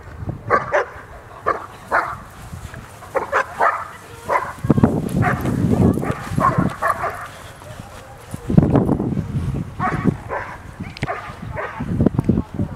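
German Shepherd making many short, repeated yips and whines in excitement during obedience heelwork. A low rumble comes twice in the middle.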